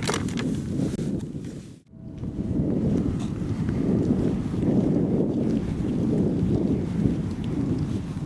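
Wind buffeting the microphone: a steady, gusting low rumble with no voices. It follows a brief dropout about two seconds in.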